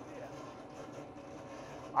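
Faint, steady mechanical hum in a pause between words.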